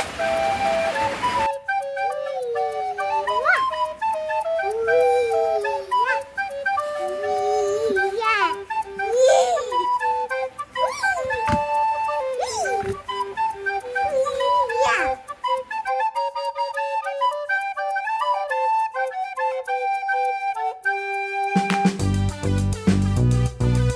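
Background music led by a flute-like melody whose notes swoop and slide up and down. A brief noisy stretch comes in the first second and a half, and the low part of the accompaniment drops out for the last few seconds.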